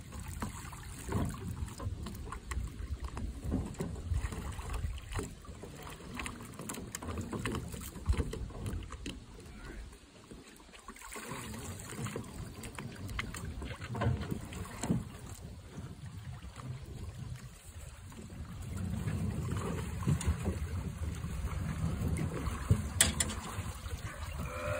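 Water sloshing around people wading and shifting an aluminum boat hull in shallow water, with wind rumble on the phone microphone and occasional knocks against the hull. The rumble grows louder over the last few seconds.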